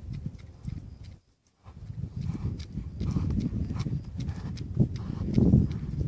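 Hoofbeats of a young Quarter Horse colt moving around its handler on a lead line in deep arena sand: dull, irregular thuds, with a brief lull about a second in and growing louder after it.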